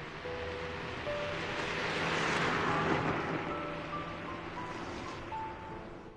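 A car driving by, its tyre and engine noise swelling to a peak about two seconds in and then fading away, over soft background music with slow held piano notes.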